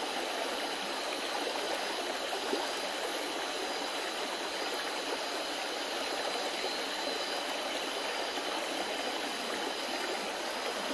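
Steady rush of flowing stream water, even throughout, with a faint steady high-pitched tone above it.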